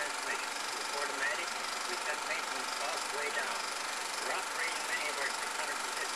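Muffled, indistinct speech from an old film's soundtrack, heard over a steady hiss with a faint high whine.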